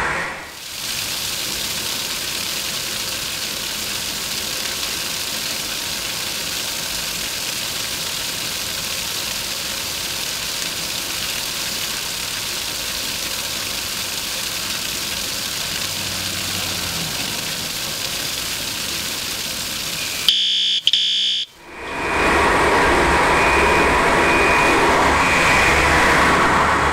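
Water from a wet fire sprinkler system's inspector's test outlet gushing out and splashing onto concrete, a steady rushing hiss. About twenty seconds in, after a brief break, the building's fire alarm sounds loudly with a high tone, set off by the water flow through the system.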